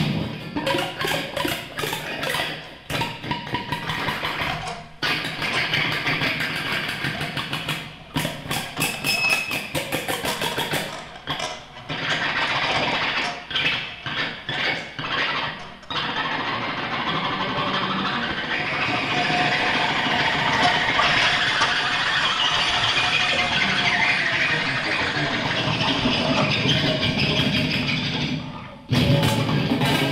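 Free-improvised experimental music from an amplified wooden board with electronics and an electric guitar. It starts as dense, stuttering clicks and cut-up noise with short gaps, then from about halfway turns into a steadier, thick noisy wash that breaks off shortly before the end.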